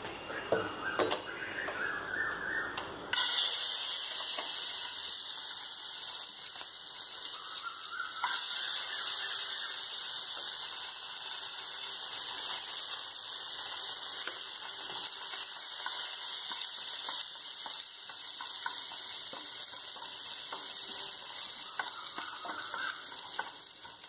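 Cashew nuts frying in ghee in a pan: a steady sizzle that comes in suddenly about three seconds in and carries on evenly. A few light clicks come before it.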